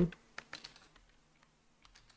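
A few light computer keyboard keystrokes, scattered: several in the first second, then a pair near the end.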